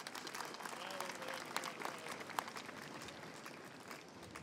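A crowd applauding, with a short voice about a second in; the clapping thins out near the end.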